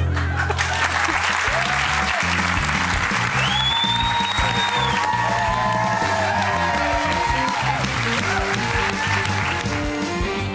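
Studio audience and contestants clapping and cheering over upbeat game-show music.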